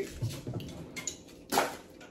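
Snack packets and biscuits being handled on a wooden table: faint light clicks and rustles, with one louder sharp crackle about one and a half seconds in.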